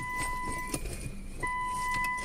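Car's electronic warning chime: two steady beeps, each just under a second long, about a second and a half apart, over light rustling and clinking of tools in a small bag.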